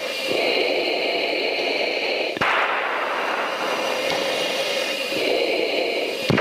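Steady rushing air and engine noise inside a fighter jet's cockpit in flight, with a single sharp click about two and a half seconds in.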